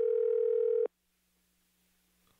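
Telephone ringback tone on an outgoing call: the end of one steady ring, which cuts off sharply about a second in.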